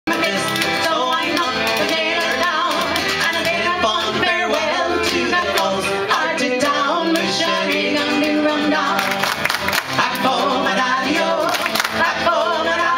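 Celtic folk band playing live: fiddle and acoustic guitar, with voices singing.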